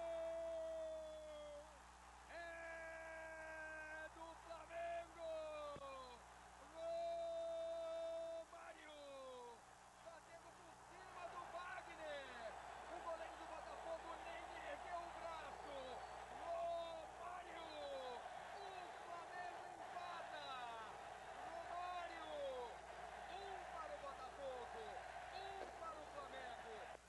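Drawn-out goal shouting by a broadcast commentator's voice: long cries held on one note for a second or two, several times, then a long run of short falling cries over crowd noise.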